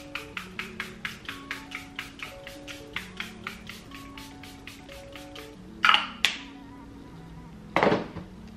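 Background music with a quick, even clicking beat and held notes. Over it, short hissing bursts of a pump-mist setting-spray bottle being sprayed, twice just before six seconds in and once more near the end; these are the loudest sounds.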